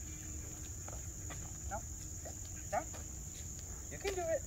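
Steady high-pitched chorus of insects in the woods, unbroken throughout, over a low background rumble, with a couple of short faint chirps near the middle.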